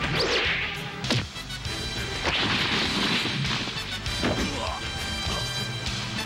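Film fight sound effects over background music: a rushing crash at the start, a sharp hit about a second in, and a longer crash from about two to three and a half seconds in.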